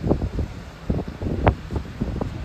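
Strong wind buffeting the microphone in irregular gusts, giving a rumbling, fluttering roar, with a sharper gust about one and a half seconds in.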